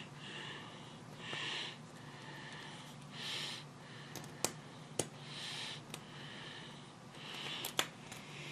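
Breathing through the nose close by, a breath about every two seconds, with a few sharp clicks as a small precision screwdriver turns the screw holding a plastic coupler pocket cover.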